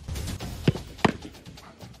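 Quick footsteps on artificial turf, then two sharp thuds about a third of a second apart.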